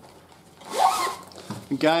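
Zipper pulled shut along the side of a Coleman roll-up six-can cooler: one quick zip of under a second, about halfway through.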